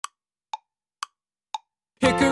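Tick-tock of a pendulum clock: four crisp ticks, about two a second, alternating higher and lower in pitch.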